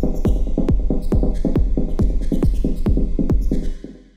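Electronic dance track with a kick drum on every beat, a little over two a second, over deep bass and higher synth layers. It stops near the end with a short fading echo: the end of a live-arranged Ableton Live track.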